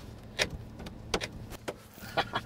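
A few sharp clicks and knocks as snow-covered metal fittings in the back of a car are gripped and pulled, over a steady low hum.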